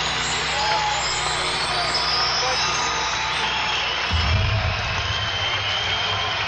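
Crowd noise and voices over music on a live rock concert recording, with a strong low bass sound coming in about four seconds in.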